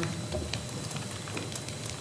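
Room tone of the meeting microphones: a steady hiss with a few faint clicks.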